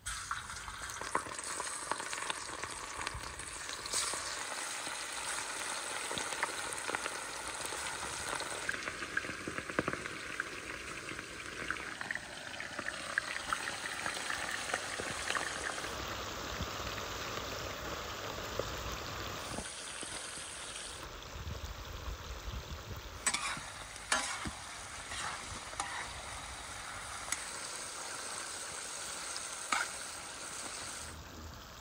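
Pieces of lamb frying in hot fat in a large steel wok, a steady, dense sizzle that starts abruptly. A few sharp clinks of a metal spoon against the pan about two-thirds of the way through as the meat is stirred.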